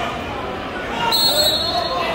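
Voices and crowd noise from spectators in a gym during a wrestling match. About halfway in, a brief high steady tone sounds for under a second.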